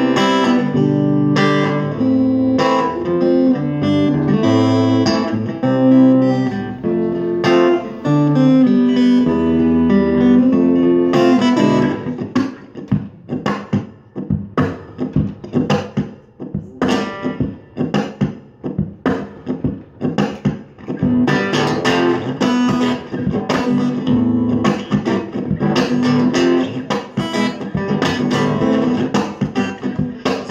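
Amplified acoustic guitar playing an instrumental intro. Sustained strummed chords ring for about twelve seconds, then give way to a choppy stretch of short, sharp percussive strokes, and fuller chords return over that rhythm about 21 seconds in.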